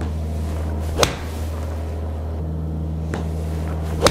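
A steady low hum, with a sharp click about a second in and a fainter one near three seconds. At the very end comes the sharp crack of a wedge clubface striking a golf ball.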